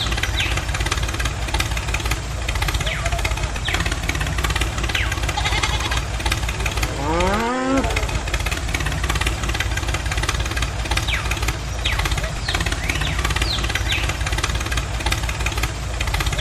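Tractor engine sound running steadily with a fast knocking beat, laid over a toy tractor. Short high chirps come and go, and a rising whine sweeps up about seven and a half seconds in.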